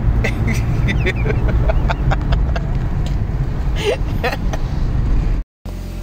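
Low, steady rumble of a car driving, heard from inside the cabin, with faint voices over it. The sound cuts out completely for a moment about five and a half seconds in, and laughter follows.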